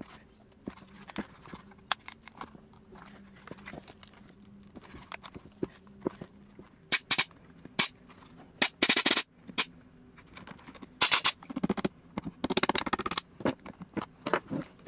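Short, loud hissing blasts from a compressed-air blow gun forced between a plastic measuring jug and the cured resin casting around it, to break the jug free. The first blasts come about seven seconds in, with a longer one around nine seconds and more near the end. Before them, small clicks and knocks come from the plastic jug being worked by hand.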